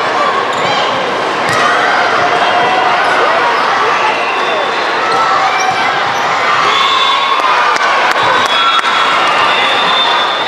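Loud din of a busy volleyball gym: many girls' and spectators' voices calling and shouting over one another, with a few sharp thumps of balls being hit or bouncing on the court.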